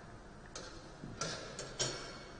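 Footsteps of hard-soled shoes: three or four sharp clicks about two-thirds of a second apart as a player walks beside the pool table.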